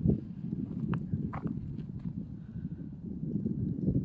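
Footsteps on a dirt trail over a low, rough rumble of wind on the microphone, with a couple of sharper clicks about a second in.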